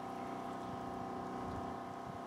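Steady mechanical hum of a running motor, holding one even pitch.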